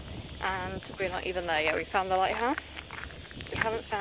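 A woman talking in short phrases over a steady high hiss.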